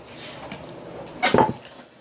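Handling noise from the phone that is recording: a short clatter of knocks and rubbing, a little over a second in, as it is grabbed close up.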